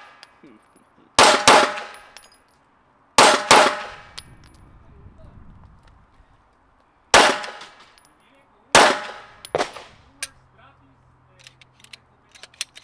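Nine-millimetre Glock 19 pistol with a Ramjet muzzle compensator firing 115-grain Federal rounds in quick double taps: two fast pairs of shots about two seconds apart, then two more shots about a second and a half apart. Faint metallic clicks of the pistol being handled follow near the end.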